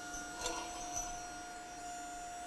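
Steady electric hum with a constant mid-pitched tone, from the motor-driven hydraulic pump unit of a motorized H-frame shop press running. Two faint clicks come about half a second and one second in.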